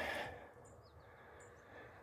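A short breathy exhale in the first half second, then quiet outdoor ambience with a few faint high bird chirps.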